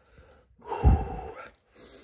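A man breathing out hard close to the microphone, a single breath starting a little over half a second in and fading within about a second.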